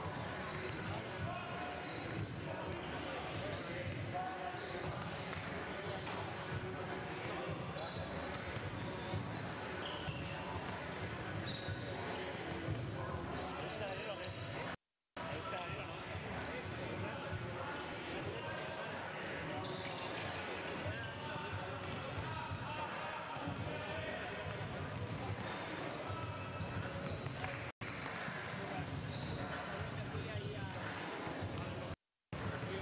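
Several basketballs bouncing on a hardwood court during warm-up, with a steady hubbub of voices echoing in a large sports hall. The sound cuts out for a moment twice, once around halfway and once near the end.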